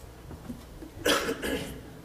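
A person clearing their throat with two short coughs about a second in.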